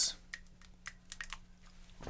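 Marker pen on a whiteboard: a quick string of light ticks and scratches over about a second, with a low steady hum beneath.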